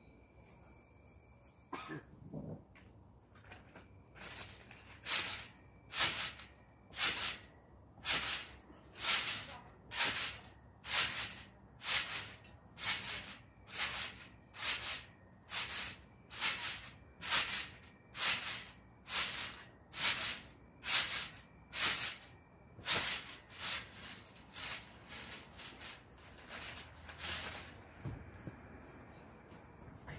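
A person bouncing on a backyard trampoline: a short rushing sound with each bounce, about one a second, more than twenty in a row, stopping shortly before the end.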